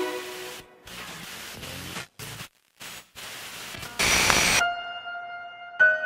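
Experimental film soundtrack: hissing static that cuts off abruptly several times, then a loud burst of hiss about four seconds in that gives way to a ringing tone, struck again near the end.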